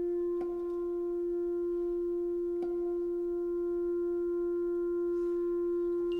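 Orchestral introduction to a jazz ballad: a solo wind instrument holds one long, steady, pure note. Two faint clicks sound behind it, about half a second and two and a half seconds in.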